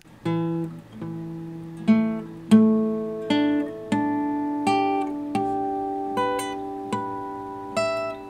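Steel-string acoustic guitar (Tanglewood) plucked one note at a time in pairs, a fretted 12th-fret note and then the 12th-fret harmonic on the same string, going string by string from low E up to high E as an intonation check. Each pair rings at the same pitch, the sign that the intonation is set right.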